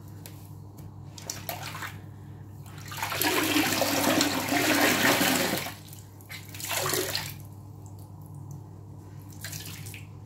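A water-soaked foam sponge squeezed by hand over a sink. Water gushes out and splashes into the basin for a couple of seconds, starting about three seconds in, followed by a shorter gush a second later and a small one near the end, with faint squishes and drips between.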